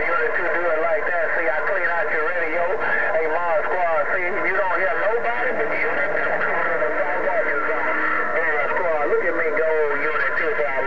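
Another station's voice received over a President HR2510 radio and heard through its speaker, thin and garbled so that no words can be made out.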